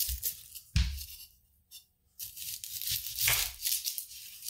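Chef's knife cutting through a red onion's papery skin and layers on a plastic cutting board, in two stretches of rustling, crunching cuts with a pause between. The first ends with a knock of the blade on the board about a second in.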